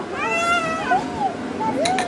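A young child's high-pitched, drawn-out meow-like squeal that holds level and then falls away, followed by two shorter rising-and-falling cries. A sharp click comes near the end.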